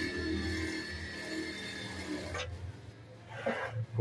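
Gemsy GEM8801E-H industrial lockstitch sewing machine, with its built-in motor, running at steady speed as it sews denim: an even whine that stops about two and a half seconds in.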